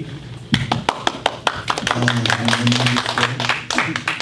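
Scattered hand claps from a small group of people, sharp and uneven, lasting about three seconds. A man's long, drawn-out 'um' into a microphone runs under the second half.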